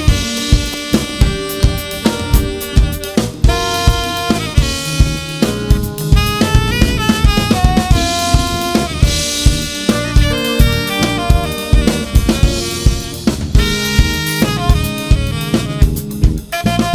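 Live jazz band: a saxophone plays the lead melody, with quick runs of notes, over drum kit, electric bass, guitar and keyboard, with a steady beat of about two drum hits a second.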